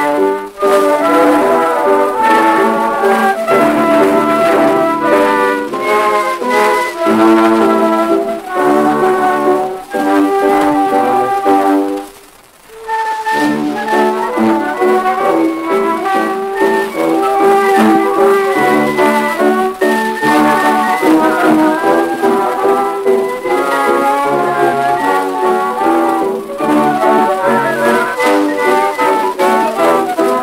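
Early acoustic-era orchestral recording played from a 1902 Columbia disc record, brass instruments carrying the melody. The music breaks off for about a second, about twelve seconds in, then starts again.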